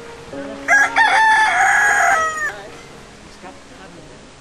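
A rooster crows once: a short first note just under a second in, then a long held call that falls away at the end at about two and a half seconds.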